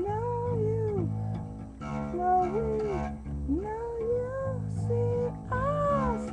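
A steady guitar chord ringing under a wordless wailing voice whose long notes glide up and then fall away, several in a row.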